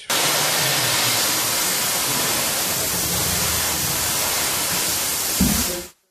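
A loud, steady hissing rush from building work throwing sparks, cutting in and out abruptly, with a short low thump shortly before it stops.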